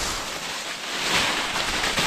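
Dry leaf litter and brush rustling and crunching close to the microphone as someone pushes through undergrowth, in uneven surges.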